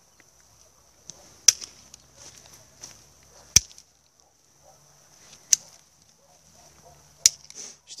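Hand pruning shears (secateurs) snipping through young quince shoots: four sharp clicks, about two seconds apart.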